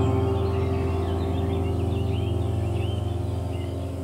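Ambient background music: one sustained, slowly fading chord, with bird chirps over it that thin out after the middle.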